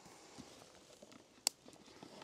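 Faint handling of a cardboard box and its card insert as it is opened, with one sharp click about one and a half seconds in.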